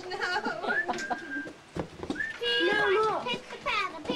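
Infant crying in a series of short wails, the longest and loudest about two and a half seconds in.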